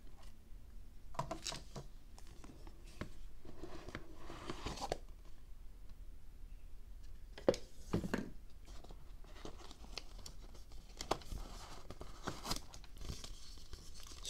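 Hands opening a white cardboard product box and handling the paper inside: scattered faint rustling, sliding and crinkling of paper and card, with a few sharp clicks.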